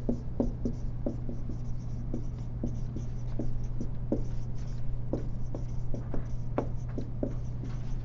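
Irregular light taps and scratches, about two or three a second, like writing by hand, over a steady low hum.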